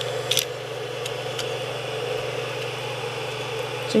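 Steady whir of a small cooling fan on the Creality CR-10 3D printer's hotend, with a light click about a third of a second in and a fainter tick a second later.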